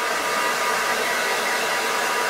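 Ordinary handheld hair dryer running steadily, blowing air over a washed bird skin to dry the feathers: an even rush of air with a thin, steady motor whine.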